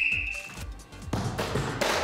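A whistle blown once, a short steady blast that stops just after the start. Then, from about a second in, a football strike and a Brayer fan heater knocked over onto the floor, loudest near the end, over background music.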